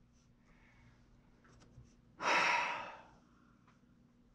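A person's single audible sigh, a breathy exhale about two seconds in that fades out, with a few faint light ticks around it.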